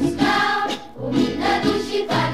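Background music: a song with singing voices over instrumental backing, in sung phrases with a brief dip about halfway through.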